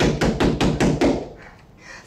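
Knuckles rapping on a closed hotel-room door: a quick run of about eight knocks over just over a second, then a pause.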